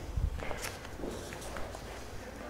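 A few soft, irregular footsteps on a hard floor.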